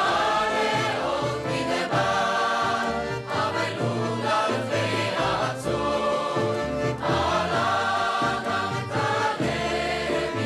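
Mixed chorus of men and women singing together in long held phrases, over low instrumental accompaniment.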